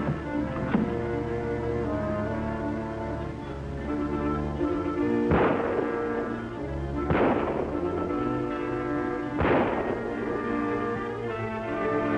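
Dramatic orchestral film-serial score with three sharp bangs, the first about five seconds in and the others roughly two seconds apart.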